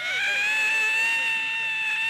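A single long, high-pitched scream held almost level on one pitch.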